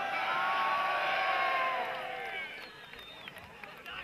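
Crowd cheering and yelling, many voices with long held shouts, dying down about two seconds in to scattered crowd chatter.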